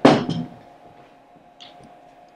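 A single loud thump at the start that dies away within about half a second, then a quiet room with a faint steady hum.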